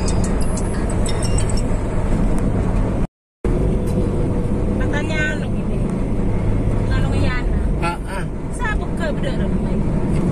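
Steady low rumble of road and engine noise inside a vehicle cruising on a highway, with voices and some music over it. The sound cuts out completely for a moment about three seconds in.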